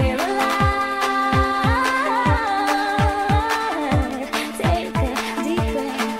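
Fast bounce dance music: a four-on-the-floor kick drum, each beat dropping in pitch, about three beats a second, under sustained chords and a high lead melody that glides up and down.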